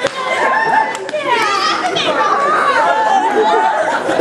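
Several people talking and calling out over each other, loudly, with no single voice standing clear.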